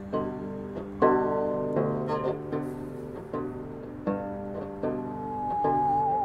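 Banjo picked slowly, one plucked note or chord about every second, each left ringing. Near the end a musical saw enters with one high, wavering tone that slides downward.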